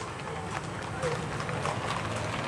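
Hooves of several horses clip-clopping on a paved road as a group of riders comes by at a quick pace, the hoofbeats overlapping irregularly.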